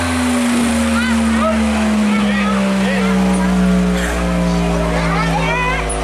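Loud music played through a parade float's loudspeaker system: a long held low note that sinks slowly in pitch, with short rising-and-falling high notes over it.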